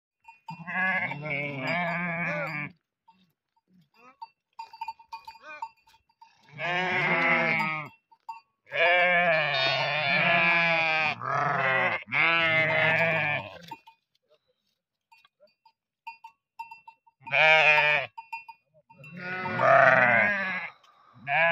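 A flock of Kangal sheep, ewes with young lambs, bleating: about six long, wavering calls of one to two seconds each, separated by short quiet gaps.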